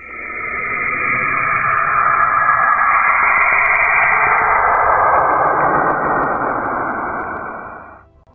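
Saturn's radio emissions, picked up by a spacecraft's plasma wave instrument and converted into audible sound: a steady hiss with faint wavering tones in it. It fades in over the first second or two and fades out near the end.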